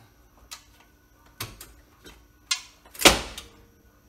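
A few sharp metallic knocks and clunks, the loudest and longest about three seconds in, as the loosened lower frame member (front subframe) under the car is pushed back up and handled.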